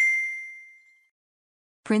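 A single bright electronic ding, one ringing tone that fades away within about a second. It is the sound effect that goes with an on-screen subscribe-button click.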